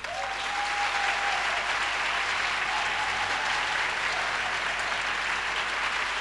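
Audience applauding steadily, breaking out all at once as the song's last piano chord dies away.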